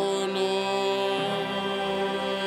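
A group of men singing a slow Simalungun hymn together, holding long notes and moving to a new note about a second in.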